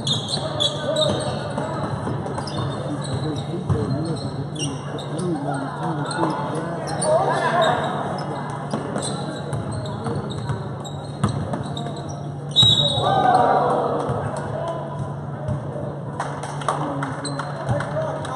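Basketball game in a gym: the ball bouncing on the court, shoes squeaking and players and spectators talking and calling out, all echoing in the hall. The loudest moment is a sharp knock about twelve and a half seconds in.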